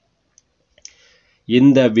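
A brief pause in spoken reading: a couple of faint mouth clicks and a short soft breath, then the voice resumes about one and a half seconds in.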